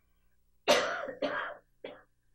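A man coughing: two harsh coughs and a short third one.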